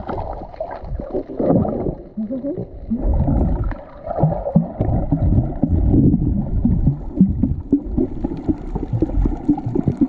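Muffled, uneven water noise heard with the microphone under water: sloshing and gurgling with a low rumble, swelling and fading as the camera moves through the water.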